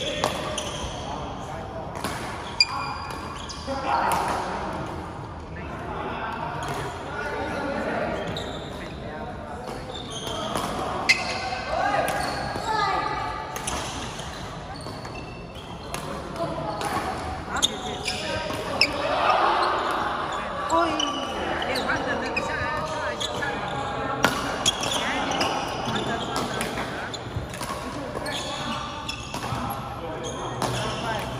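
Badminton rackets striking a shuttlecock during doubles rallies, sharp cracks at irregular intervals with shoe squeaks on the court floor, over a background of people's voices in a large echoing hall.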